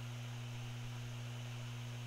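Steady low hum with an even hiss underneath: the background noise of the voice recording in a pause between words.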